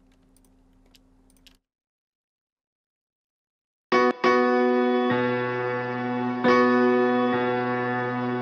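Mix playback of a chill-out song starting about four seconds in: sustained piano chords through a long reverb set fully wet, with a low note joining about a second later and new chords at a slow pace. Before it, only a faint hum and then silence.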